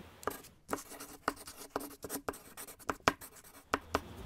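A quick, irregular series of about a dozen short, sharp clicks and taps.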